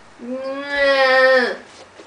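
A person's voice: one long, drawn-out whine held on a steady pitch for over a second, dropping slightly as it ends.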